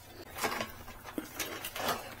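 Faint, scattered clicks and handling noise of a hex key working the rear fender bolt on a folding e-bike. The bolt is being removed because it binds the rear suspension.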